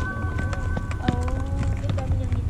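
A basketball bouncing on an outdoor asphalt court, mixed with the footsteps of players running, heard as a string of irregular sharp knocks.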